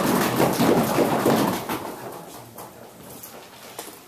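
Audience applauding, a dense run of claps that dies away about two to three seconds in.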